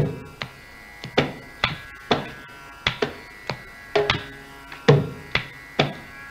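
Mridangam played alone over a steady drone: a run of sharp strokes, about two to three a second in an uneven rhythm, some of them ringing with a clear pitch.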